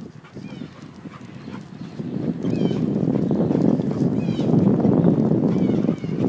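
A dog's paws striking asphalt as it runs beside a moving bicycle. About two seconds in, a louder steady noise sets in and covers it: wind and rolling as the bike picks up speed.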